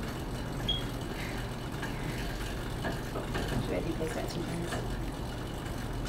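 Monark cycle ergometer flywheel spinning steadily as it is pedalled with no resistance during the cool-down, a low, even whir.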